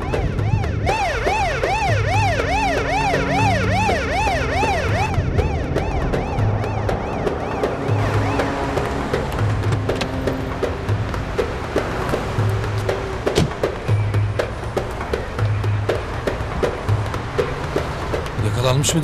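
A police car siren yelping in fast rising-and-falling sweeps, about three a second, from about a second in until about five seconds in. Background music with a steady low beat runs on under it and after it.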